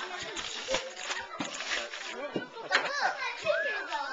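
Several children's voices chattering and calling together, with a high gliding child's voice near the end. Wrapping paper rustles and tears in the first half.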